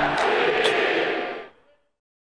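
Tail of a logo intro sting: a dense wash of noise, left over from a musical swell and hit, that fades out about a second and a half in, then silence.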